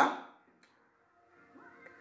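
A man's speaking voice trails off at the end of a word, followed by a pause of near silence before he speaks again.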